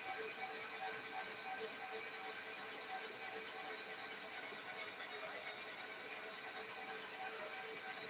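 Stand mixer running at low speed, kneading bread dough with a faint, steady mechanical hum.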